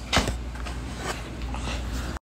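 Handling of a plastic blister package holding headphones: one sharp click just after the start, then a few faint ticks, over a steady low hum.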